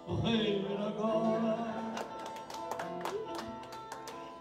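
A man singing a verse of Portuguese cantoria to acoustic guitar accompaniment; the voice stops about halfway through and the guitar carries on with quick plucked notes.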